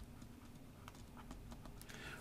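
Faint, irregular little ticks and taps of a stylus on a drawing tablet while a word is handwritten.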